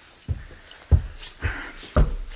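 Footsteps climbing carpeted stairs: about four dull thumps, roughly two a second, with rustling between them.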